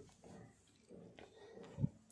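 Near silence: faint room tone in a pause between spoken sentences, with one brief low thump near the end.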